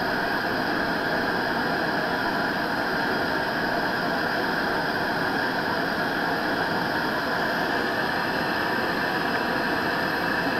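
Compact propane stove burner running at high flame, a steady hiss, with a pot of water on it just short of a rolling boil.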